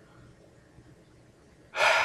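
Quiet room tone, then near the end a person's sudden loud breath close to the microphone that tails off.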